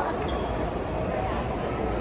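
Shopping mall background noise: faint distant voices over a steady hum.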